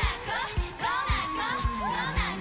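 K-pop girl-group song: female voices singing a long held, sliding line over drum beats and bass.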